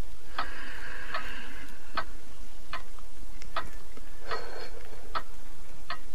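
A clock ticking slowly and evenly, a little under one tick a second.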